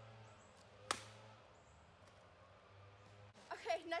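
A single sharp tap about a second in, over a faint steady hum; a voice starts speaking near the end.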